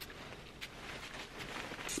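A perfume bottle's spray atomizer spritzing onto the skin, heard as a couple of brief, faint hisses.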